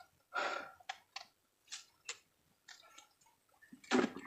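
A few faint, brief splashing and handling sounds from a large snakehead being grabbed by hand out of shallow swamp water, with short clicks in between and a louder splash near the end.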